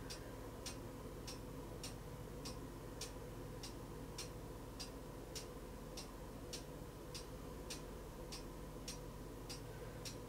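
Faint, regular ticking, a little under two ticks a second, over a faint steady hum in an otherwise quiet room.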